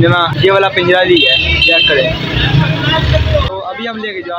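A motor vehicle's engine running close by, a steady low rumble that cuts off suddenly about three and a half seconds in.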